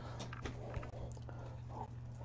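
Quiet room tone: a steady low hum with a few faint ticks of trading cards being handled.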